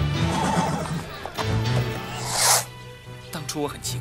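A horse gives one short, loud snort a little after two seconds in, over background music.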